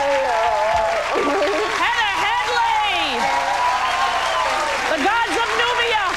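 Studio audience applauding with a steady wash of clapping, with cheers and whoops rising over it.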